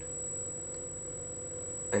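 Steady electrical hum with a faint high-pitched whine, unchanging throughout.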